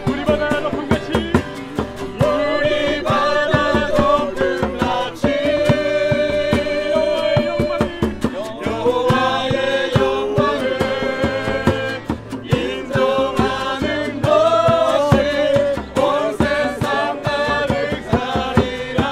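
A small group singing a worship song together in unison, with long held notes, accompanied by strummed acoustic guitars and a djembe hand drum.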